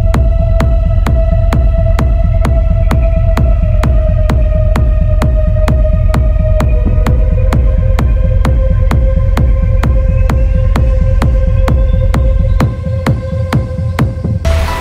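Hardcore techno: a hard kick drum pounds at about two and a half beats a second over heavy bass, under a long held synth tone that steps down in pitch about halfway through. Near the end the deep bass drops out while the beat carries on.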